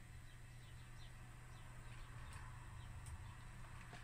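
Quiet room tone: a steady low hum with faint, short chirps that fit distant birdsong, mostly in the first couple of seconds.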